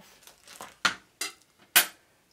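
Plastic sheet pieces and a rod being handled and set down on a table: light rustling, then three sharp knocks, the last the loudest.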